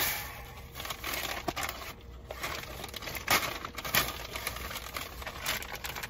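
Black plastic mailer bag being torn open and handled, with irregular crinkling and crackling.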